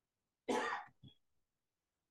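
A person coughing: one short, sharp cough about half a second in, followed by a smaller one.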